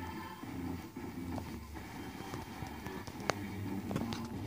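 Quiet outdoor background: a steady low rumble, with one sharp click a little over three seconds in.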